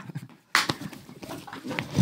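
Two men grappling in a playful scuffle: heavy panting, grunts and rustling of clothes. The sound cuts out briefly about half a second in, then comes back suddenly.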